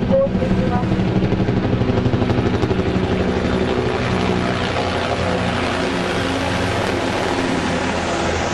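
Three helicopters, including Maritime Self-Defense Force SH-60s, flying low overhead in formation. The rotor beat pulses rapidly at first, then merges into a steadier rotor and turbine noise as they pass overhead.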